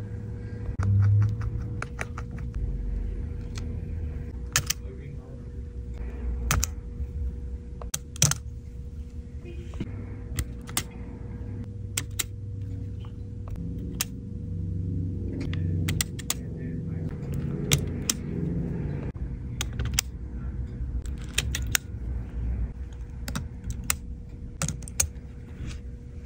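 Small, irregular clicks and taps of a repair tool on an opened iPhone's board, shields and flex-cable connectors as they are pried and unclipped, with a faint steady hum underneath.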